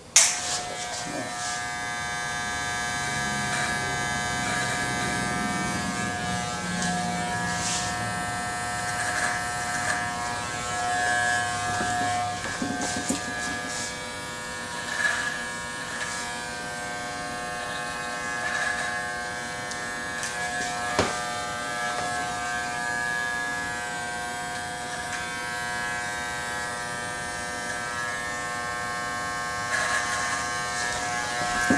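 Electric hair trimmer running with a steady buzz while trimming a mustache, with a few faint clicks along the way.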